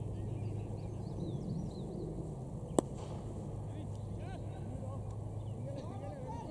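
A single sharp crack of a cricket bat striking the ball, a little under three seconds in, over a steady low outdoor rumble.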